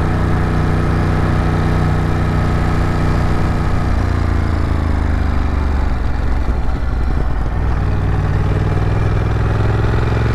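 Ducati Monster 937's V-twin engine running at low road speed. Its pitch drops about four seconds in as the bike slows, it turns uneven for a moment around six to seven seconds in as the bike rolls over railroad tracks, then it runs steadily again with the pitch rising slightly near the end.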